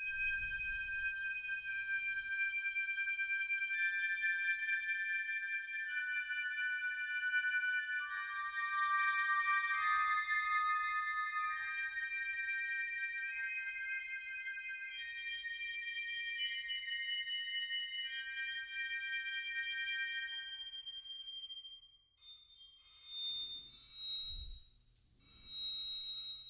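Sampled woodwind ensemble (Spitfire Audio Originals Epic Woodwinds, long sustained articulation) played from a keyboard in its upper octaves: slow, overlapping held notes, very high, going up into the stratosphere. Near the end the long notes stop and a few short high notes follow.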